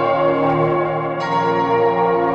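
Background music of sustained, ringing bell tones, with a new set of notes struck about a second in.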